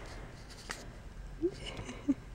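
Quiet car cabin with a low steady hum, a single light click, and a very short faint voice-like sound about one and a half seconds in.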